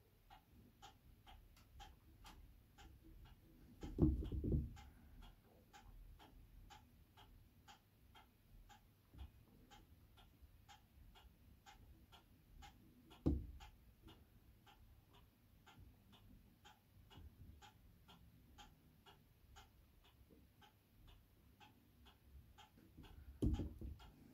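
A clock ticking steadily and quietly, about two ticks a second. Three low dull thumps break in, about four seconds in, near the middle and near the end.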